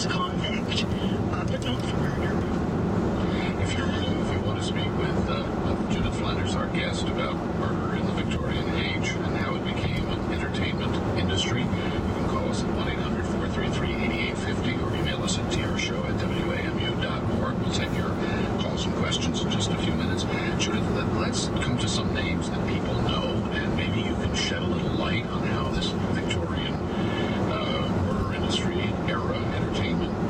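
Steady tyre and road noise inside the cabin of a 2011 VW Tiguan SEL on 18-inch wheels with 50-series tyres, cruising at highway speed. A voice talks faintly underneath the noise.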